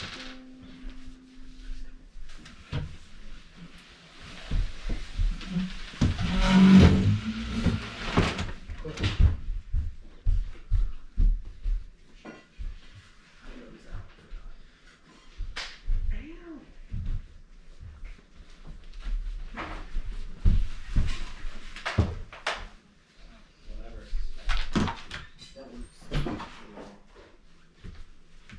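Irregular knocks and footfalls on a wooden floor as people move about, with scattered bits of voice.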